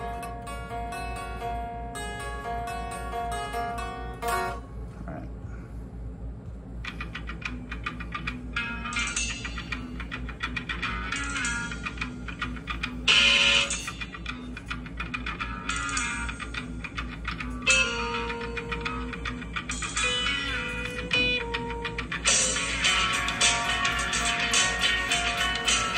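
Electric guitar playing a lead lick in phrases of picked single notes that ring on, with short gaps between phrases. The guitar is tuned a half step down, with one string lowered further to G sharp. A steady low hum runs underneath.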